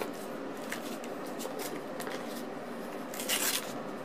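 Paper burger wrapper crinkling as it is peeled back by hand, with one louder rustle about three seconds in, over a steady faint hiss.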